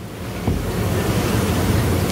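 Wind gusting across an outdoor microphone: a rushing noise with a heavy low rumble that builds steadily and is loudest from about half a second in.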